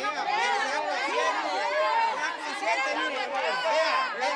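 Several people talking over one another in a heated argument, with a woman's raised voice loudest.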